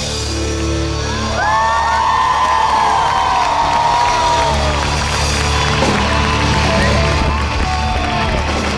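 Live pop-rock band playing on an outdoor stage, with crowd whoops and cheering over the music.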